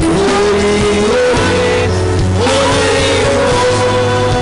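Live gospel worship song: a man's voice sings long held notes that slide up and down, over a band with a steady bass.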